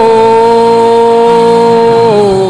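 A man's voice singing one long, held "oh" into a microphone, steady in pitch and loud.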